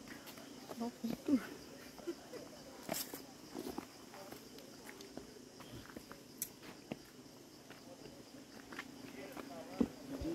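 Footsteps on a stone forest trail: scattered light steps and scuffs, each a short click or knock.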